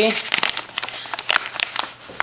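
Paper inner bag of a cornstarch box crinkling as the box is tipped and the powder is shaken out into a plastic bowl: a quick, irregular run of sharp crackles that thins out near the end.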